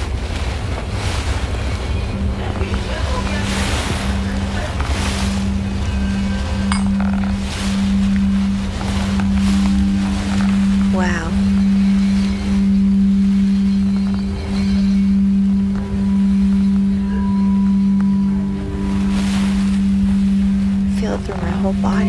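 Quartz crystal singing bowls played by circling mallets around their rims. A steady low tone rises and falls in a slow pulse, and a second, higher tone joins about ten seconds in.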